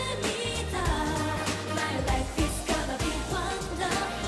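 Young women singing an upbeat K-pop song live into handheld microphones over a pop backing track with a steady beat.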